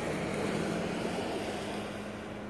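Steady engine hum holding one constant low tone, over a bed of outdoor background noise.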